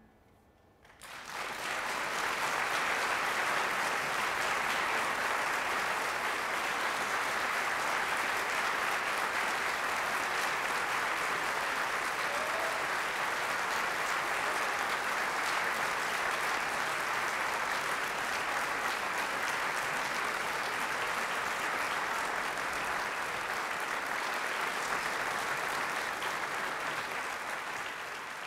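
Audience applauding steadily, starting about a second in after a moment of silence, in response to a finished piano piece.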